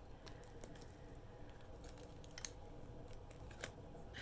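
Faint handling of wrapped items and packing paper: a few scattered light clicks and rustles, with a sharper tick near the end.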